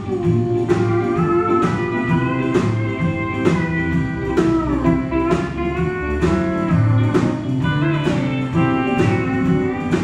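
Live country band playing an instrumental passage with electric guitar, pedal steel guitar, bass, piano and drums over a steady beat. The lead notes bend and slide in pitch, most plainly about halfway through.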